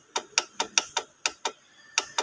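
Rapid, even clicking, about five clicks a second, from repeated presses of the pulse button on an ultrasound therapy unit's control panel, stepping through its pulsed-mode duty-cycle settings.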